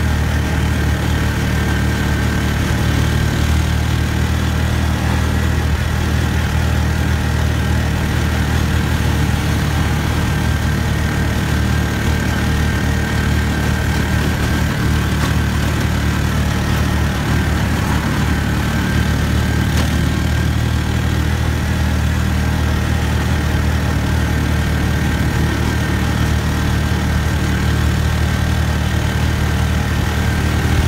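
Engine of the vehicle being ridden in, running at a steady pace with a constant low drone and road noise, heard from on board while it travels down the highway.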